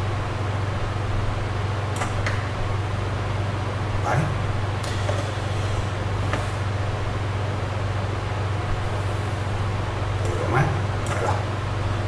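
Steady low electrical hum, with a few sharp clicks and two brief low vocal sounds, about four seconds in and near the end.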